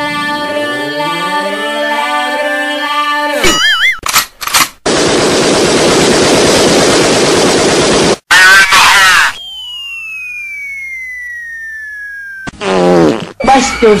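Edited dance-mix sound effects in a row. First a chord of tones swells and rises, ending in a warble about three and a half seconds in. Then comes a few seconds of hiss like static, a loud short blast, a whistle gliding down while another tone glides up, and near the end chopped, buzzy stutters.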